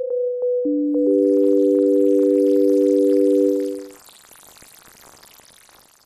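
Absynth 5 software synthesizer playing pure sine-wave tones with its Aetherizer granular effect switched off: two short single notes, then a three-note chord held for about three seconds that fades out about four seconds in. A faint hiss follows.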